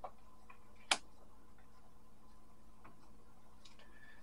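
Faint handling and shuffling of a tarot card deck in the hands: a few irregular light clicks of the cards, the sharpest just under a second in, over a faint steady room hum.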